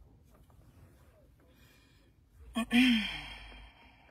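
A woman's loud, breathy sigh, voiced and falling in pitch, about two and a half seconds in, dying away over about a second.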